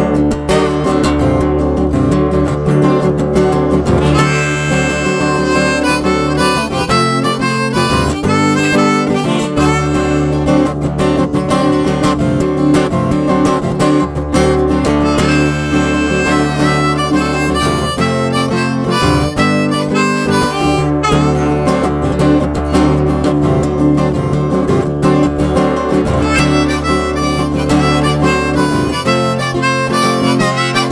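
Harmonica solo played over a strummed acoustic guitar, an instrumental break between sung verses.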